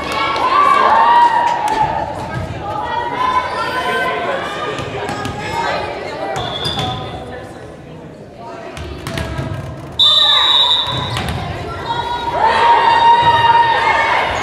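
Indoor volleyball in a gym: a volleyball thuds and bounces on the hardwood floor while players call out and shout. A short, high, steady whistle sounds about ten seconds in, followed by louder shouting.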